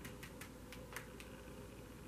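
Faint, light clicks of tarot cards being touched and slid by hand across a cloth-covered table, the clearest about a second in, over a low steady hum.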